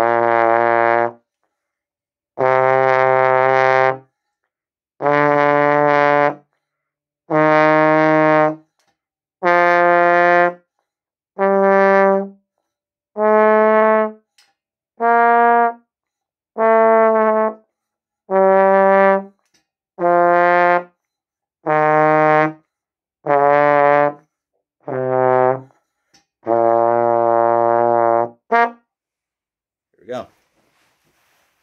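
Trombone warm-up: about fifteen sustained single notes, each a second or so long with short breaks between them, stepping up in pitch and then back down, the last note held longest.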